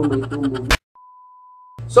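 A clipped voice cuts off abruptly with a click, and after a brief dropout one steady single-pitch electronic beep sounds for a bit under a second, marking a splice where the recording restarts.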